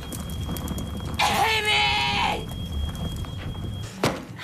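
A woman's wordless, high-pitched cry of rage, lasting about a second from just over a second in.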